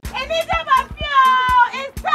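Advert soundtrack: women's excited voices over music with a drum beat, one voice holding a long high note about a second in.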